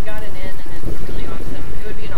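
Indistinct conversation among several people, over a constant low rumble of wind buffeting the microphone.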